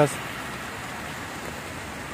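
Heavy downpour: a steady, even hiss of rain falling on a wet street.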